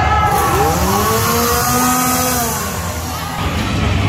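A motor revving, rising in pitch and then falling, over a loud hiss that cuts in suddenly and stops after about three seconds.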